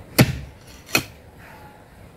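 Pickaxe striking hard, stony ground twice, about three-quarters of a second apart, the first strike the louder.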